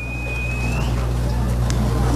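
A steady low rumble that grows louder over the two seconds. A thin high tone sounds for about the first second and rises at its end.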